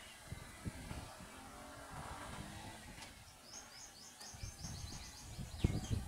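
A bird calling in a rapid run of short, high repeated notes from about three seconds in, over a low rumbling background. A few dull low thumps come near the end and are the loudest sounds.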